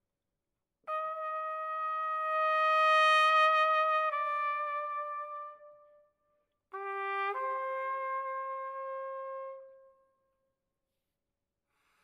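Solo trumpet playing two long sustained phrases: a held note that swells, steps down a little and dies away, then after a short breath a low note leaping up to a held note that fades out. The notes ring on in a large hall.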